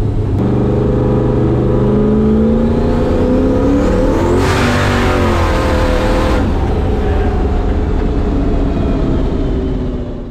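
Turbocharged drag car's engine at full throttle, heard from inside the cabin, climbing in pitch over the first few seconds, with a surge of hiss around the middle, then dropping off right at the end. On this pull it was overboosting to about 35 psi against 10 commanded, because the dome pressure sensor was unplugged and the boost control was not working.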